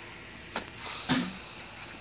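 A quiet background with one sharp click about half a second in, then a short vocal sound from a man just after a second in.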